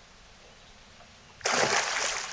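A hooked longnose gar thrashing at the water's surface beside the boat: a sudden loud splash about one and a half seconds in that carries on to the end.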